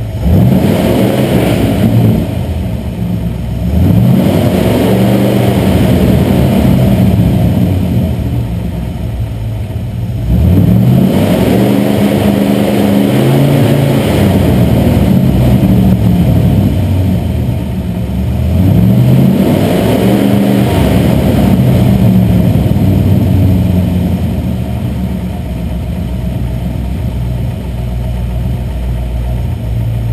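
1964 Ford Galaxie's V8 engine, under an open hood, being revved several times, its pitch rising and falling with each rev, then settling to a steady idle for the last several seconds.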